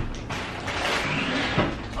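Fabric grocery bags being lifted and handled, a steady rustle with a soft knock near the end.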